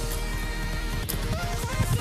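Background music with steady held tones over a beat.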